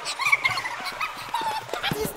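Short, high-pitched wordless vocal exclamations and laughter from a small group of people, with pitch that bends up and down.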